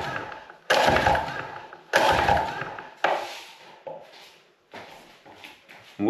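Recoil starter cord of a Mercury 9.9 two-cylinder outboard being pulled about four times, roughly a second apart, each pull a burst that fades as the rope rewinds, the later pulls fainter. The engine is being cranked with its spark plugs out and leads off for a compression test, so it does not fire.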